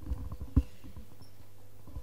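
A string of small low knocks and rustles, with one louder thump about half a second in, over a steady low electrical hum.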